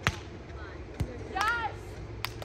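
Beach volleyball struck twice about a second apart, two sharp smacks of hand on ball, the first as the ball is attacked at the net.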